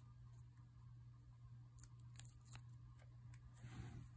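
Near silence over a steady low hum, with a few faint ticks and a short soft rustle near the end from fingers handling a nail polish strip and its backing.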